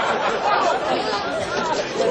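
Several people talking and calling out over one another, indistinct chatter against a steady noisy background.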